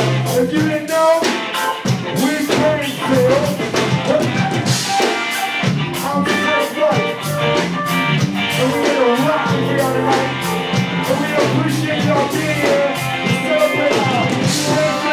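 Live rock band jamming: drum kit keeping a steady beat under electric guitar and keyboards.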